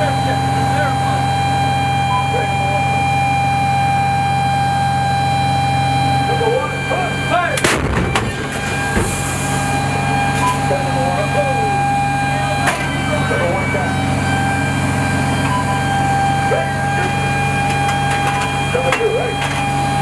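M109A6 Paladin self-propelled howitzer heard from inside the turret: its engine and turret machinery run steadily with a whine, and about eight seconds in its 155 mm howitzer fires once with a sharp blast. A lighter metal clank follows about five seconds later.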